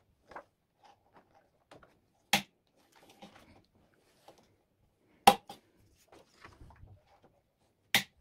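Metal rings of an A5 ring binder snapping open and shut: three sharp clicks about two and a half seconds apart, the middle one loudest, with faint rustling of plastic pocket pages and paper between them.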